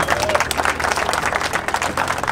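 Crowd applauding, many hands clapping together without a steady rhythm.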